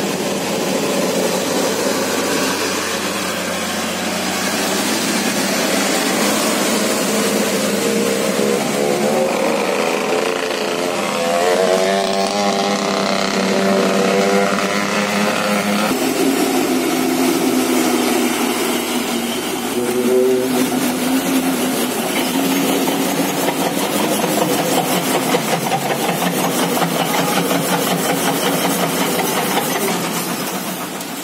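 Heavy diesel truck engines labouring hard up a steep wet grade, the engine note rising and wavering near the middle, then an abrupt switch to a steadier, lower engine note about halfway through, over a constant hiss of wet road and rain.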